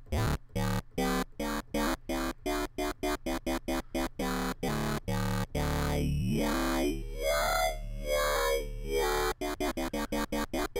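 Dubstep 'talking' wobble bass from an Ableton Operator FM synth patch run through Redux downsampling. It plays a rapid stuttering run of short notes, then from about six seconds in, longer wobbles that sweep like a voice forming vowels, then short notes again near the end. The FM operator's coarse ratio is being raised, so the tone gains higher harmonics.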